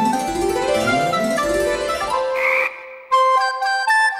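Cartoon frog croak sound effects, a quick string of rising croaks, over light keyboard music. A brief burst of noise comes about two and a half seconds in, after which the melody carries on alone.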